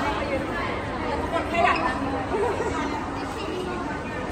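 People talking and chattering, several voices overlapping.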